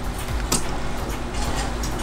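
Beer pouring in a steady stream from a homemade dispenser's nozzle into a glass and foaming up, with a single click about half a second in.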